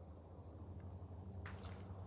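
Faint insects chirping outdoors, a short high chirp repeated steadily a little over twice a second, with one faint click about one and a half seconds in.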